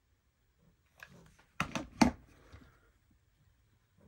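A hot glue gun being set down: a few quick knocks, the loudest about two seconds in, with soft handling rustle around them.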